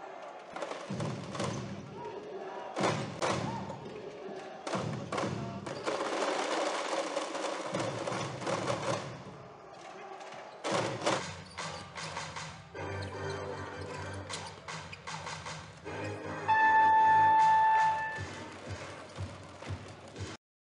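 Basketball arena game sound from cut-together clips: music and voices over the court, with thuds. Near the end a steady high tone sounds for about a second and a half and is the loudest thing heard.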